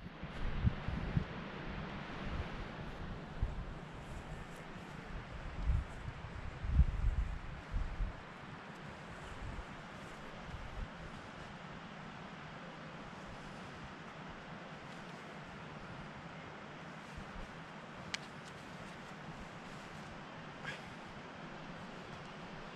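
Wind blowing across the microphone: a steady rushing hiss, with loud low buffeting gusts through the first eight seconds or so, then evening out. Two faint clicks come near the end.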